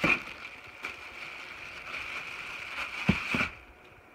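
Plastic packaging wrap rustling and crinkling as hands rummage through a cardboard box, with a few light knocks from the box or parts being handled.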